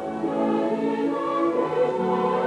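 Choral music: a choir holding long sung notes over a musical accompaniment, shifting to new notes near the end.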